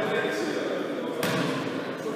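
Indistinct voices in a sports hall, with one sharp knock or thud a little past a second in.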